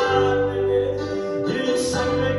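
Live worship music from a church band: keyboard and guitars playing sustained chords over a steady bass line, with a voice singing through the sound system. A short hiss comes near the end.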